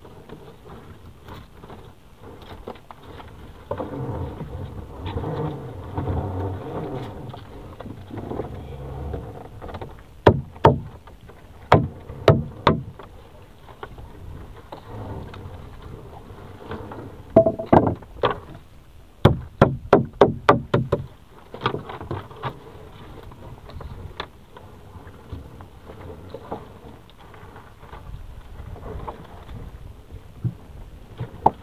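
A lobster gillnet hauled by hand over the side of a wooden fishing boat: sharp knocks against the hull come in clusters, including a quick run of about eight near the middle. A low droning tone with an even pitch sounds for about five seconds before the knocks begin.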